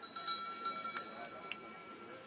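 Track lap bell, a metal bell struck several times and left ringing with a few clear high tones, signalling the runners' final lap of a 1500 m race.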